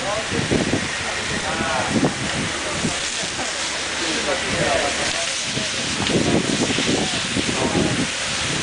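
Indistinct voices of several people talking over a steady hiss.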